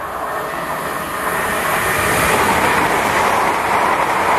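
London Midland Class 350 Desiro electric multiple unit running through the station at speed. A rush of wheel-on-rail and air noise swells over the first two seconds and stays loud as the carriages pass.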